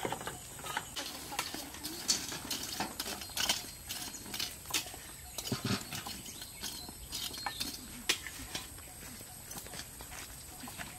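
Scattered light clinks and knocks of cooking utensils, charcoal and a metal grill being handled, coming at an uneven pace.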